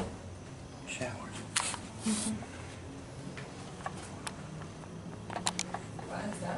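Low, indistinct voices with a few sharp clicks and taps scattered through, a cluster of them near the end, over a steady low hum.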